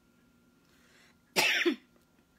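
A person coughing once, short and loud, about a second and a half in, after a faint breath.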